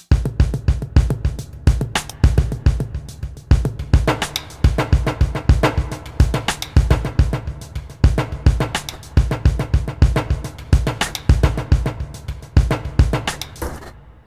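Electronic drum beat played back from a Native Instruments Maschine: a dry drum-kit pattern copied onto a percussion kit, with a steady kick and dense quick hits. It starts suddenly.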